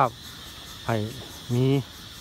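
Steady high chirring of crickets under a voice speaking two short phrases.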